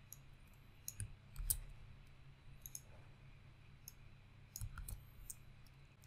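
Faint, scattered clicks of a computer mouse and keyboard, about half a dozen over several seconds, as code is copied and pasted, over a faint steady low hum.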